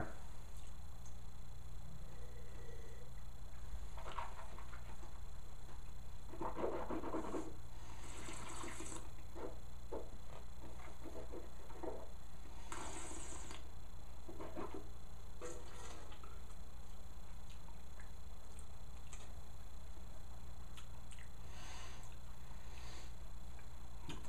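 Mouth sounds of wine tasting: several short sips and slurps of wine. About halfway through comes a longer hissing spit into a metal tin. A low steady hum sits underneath.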